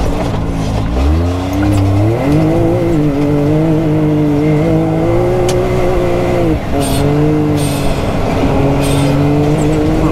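Can-Am Maverick X3 Turbo RR's turbocharged three-cylinder engine under hard throttle, heard from inside the cab. The revs climb about a second in and then hold high and steady. Past the middle they dip briefly, then settle high again.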